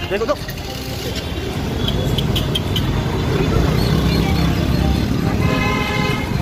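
Busy street traffic heard from a moving vehicle: a steady low engine and road rumble that grows a little louder halfway through, with a vehicle horn sounding near the end.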